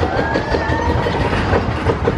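Spinning wild-mouse roller coaster car being hauled up the chain lift hill: a rapid, even clatter of the lift chain with a low rumble, and a thin whine from the lift that starts just after the opening and rises slightly in pitch.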